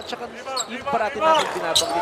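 Basketball court sounds: sneakers squealing on the hardwood floor in quick short chirps, and a basketball bouncing.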